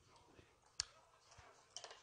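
Metal chopsticks clicking against a dish over near silence: one sharp click about a second in and a short cluster of clicks near the end.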